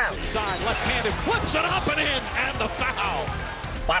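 Basketball game audio: the arena crowd, short squeaks of sneakers on the hardwood court, and a ball bouncing, with background music underneath.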